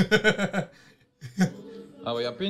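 A man laughing: a quick run of short 'ha' pulses over about half a second, then a pause and one more short burst about a second and a half in.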